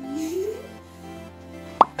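Background music with a rising tone in the first half-second, then a single short plop sound effect, a quick upward sweep, near the end.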